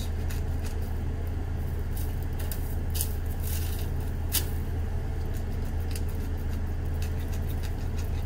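A steady low hum runs throughout. Over it comes a faint gritty crackle of peppercorns being cracked in a hand-turned pepper mill, with two sharp clicks about three and four and a half seconds in.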